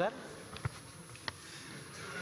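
Faint room noise picked up by a chamber microphone during a pause in speech, with two brief clicks, one about two-thirds of a second in and one just past a second.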